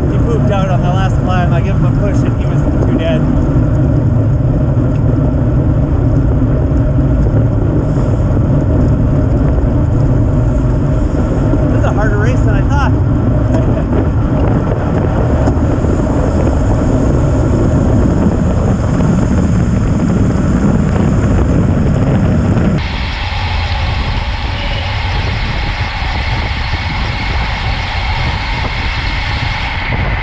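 Wind rushing over a bike-mounted action camera's microphone, with tyre and road noise, as a road bike rides in a racing pack at about 25 to 37 mph. About 23 seconds in the sound turns abruptly thinner and hissier, with less rumble.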